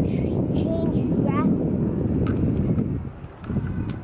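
Rough wind noise buffeting the microphone as it moves along, easing off about three seconds in. A few short, high chirps come about a second in.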